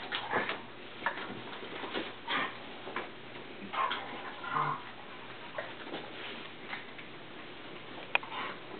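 An adult dog and a puppy play-wrestling on carpet: irregular scuffling, small clicks and short breathy bursts from the dogs, one of them a brief low growl-like sound about halfway through.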